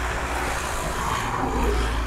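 Steady low rumble with a hiss of outdoor noise, growing a little stronger near the end.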